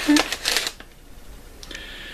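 CD cases and their bag being handled: a short burst of crinkly rustling and light clicks, which stops under a second in.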